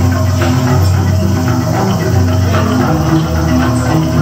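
A gamelan-style ensemble of bamboo and keyed mallet percussion, with an electronic drum kit, playing a driving piece over sustained low bass notes. The bass notes change about three seconds in.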